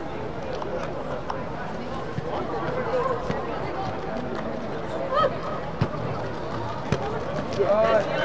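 Background voices of players and spectators echoing in an indoor sports dome, with a few sharp thuds of a soccer ball being kicked on turf around the middle of the stretch.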